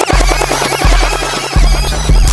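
Hip hop dance music playing loud: a fast roll of rapid repeated hits, with the deep bass coming back in about one and a half seconds in.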